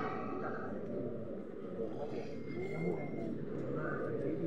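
Low, indistinct murmur of several people's voices in a large stone cathedral.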